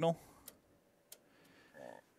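Two short, sharp clicks about half a second apart, from a control on the oscilloscope front panel being switched.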